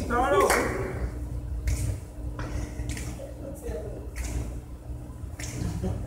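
Dancers' shoes scuffing and tapping on a hard hall floor in scattered sharp steps, over a steady low hum, with a brief voice in the first second.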